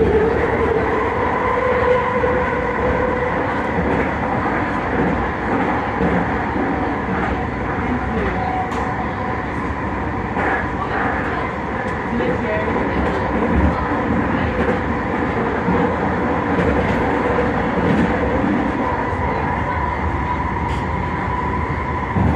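Running noise inside a moving SkyTrain car: a steady rumble of the wheels on the elevated track, with a steady electric whine over it.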